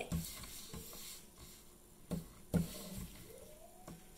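Paper strips being slid across and patted down on a wooden tabletop, a light rustle with a few sharp taps about two and two and a half seconds in.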